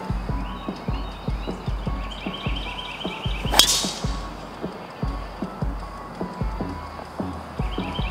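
A driver striking a golf ball off the tee about three and a half seconds in: a single sharp hit, over background music with a steady beat.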